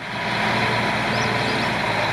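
Diesel engine of a Liebherr L 566 wheel loader running steadily with a low hum as it works loading snow into a dump truck.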